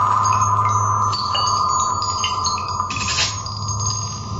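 Live laptop electronic music: a held, steady mid-pitched tone under a scatter of short, high chime-like tones that flick on and off, over a low hum, with a brief burst of noise about three seconds in.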